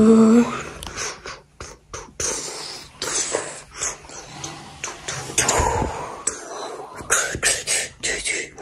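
A person making mouth-music sounds in a beatbox style: irregular puffs, clicks and breathy hisses.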